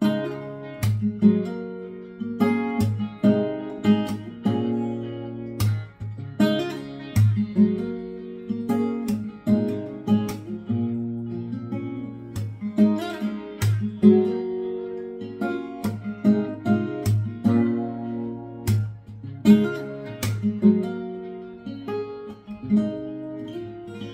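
Acoustic guitar played fingerstyle: a fingerpicked pattern of plucked notes that ring over one another, in a steady repeating rhythm.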